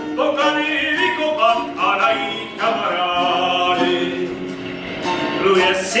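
Ukulele and acoustic guitar playing a lively instrumental passage between verses of a song, with the singing coming back in at the very end.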